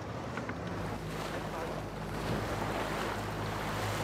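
Wind and water noise aboard a sailboat under way, with wind buffeting the microphone and a low steady hum underneath.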